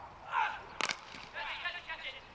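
Cricket bat striking the ball: a single sharp crack a little under a second in, with faint distant shouts around it.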